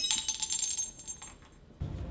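Glass test tubes clinked together, their bright ringing fading away over about the first second. A low steady rumble starts near the end.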